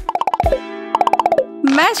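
Cartoon sound effect of two quick runs of plops, each falling in pitch, over a held tone of background music, marking candy pouring out of a can into a mouth.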